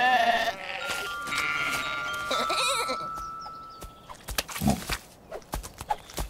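Cartoon sheep bleating in short wavering calls over two steady held tones of background music, followed by a scatter of soft short knocks near the end.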